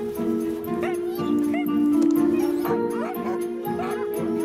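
Background music with steady held low notes, over which a pack of harnessed sled dogs keep up short rising-and-falling yips and whines, several a second.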